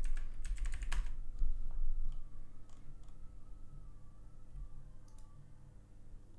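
Computer keyboard typing: a quick run of keystrokes in the first second or so, then a few scattered clicks over a low steady hum.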